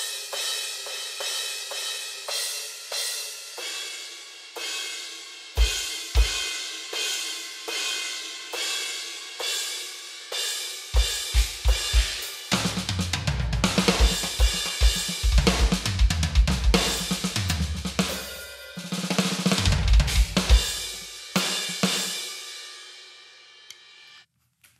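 Roland TD-25 V-Drums module sounds played from the electronic kit: a dark 18-inch crash cymbal voice struck over and over, ringing out between hits. Two bass drum kicks come in around six seconds, and from about eleven seconds a full groove of kick, snare and cymbals builds, then dies away near the end.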